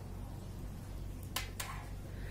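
Two light clicks about a quarter second apart from knitting needles being handled, over a steady low hum.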